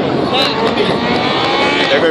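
Rally car engine running on the stage, its note rising slowly, with spectators talking over it.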